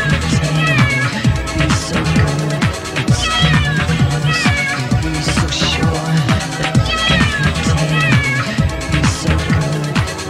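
Electronic dance music from a radio DJ mix: a steady kick-drum beat and bass line, with a high pitched sample that bends up and down and repeats in short phrases about every four seconds.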